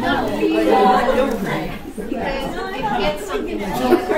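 Students chatting during a class break, many voices overlapping at once.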